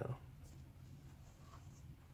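Faint rustling of a paper magazine being handled, with soft rustles about half a second in and again around a second and a half in, over a steady low hum inside a car.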